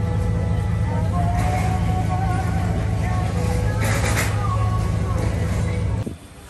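Steady low rumble of an idling vehicle engine, with people's voices over it and a short hiss about four seconds in. The sound cuts off sharply at the end.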